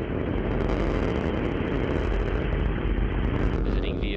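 Soyuz rocket's four strap-on boosters and core engine firing in first-stage ascent: a steady, deep rumble.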